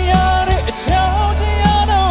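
A man singing a Burmese song live with a band of bass guitar, drums, keyboard and electric guitar, holding long notes over a steady bass.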